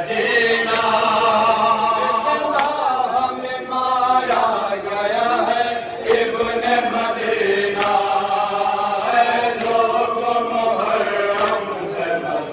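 A group of men chanting a nauha, a Shia Muharram lament, in unison through a microphone and PA, with long drawn-out wavering notes. Sharp slaps come every second or two, from chest-beating (matam) kept in time with the lament.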